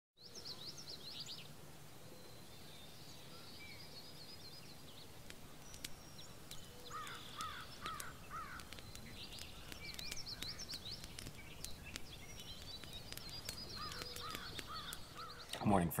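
Several songbirds chirping and singing in repeated quick phrases over a steady low hiss, the way a dawn chorus sounds. A man's voice starts right at the end.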